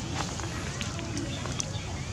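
Steady outdoor background noise with a low rumble and a few faint clicks, with faint voices in the background.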